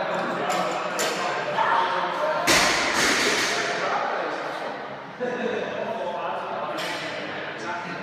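A loaded barbell dropped onto a rubber gym floor with one heavy thud about two and a half seconds in, with a few lighter knocks around it. Voices echo in the large hall throughout.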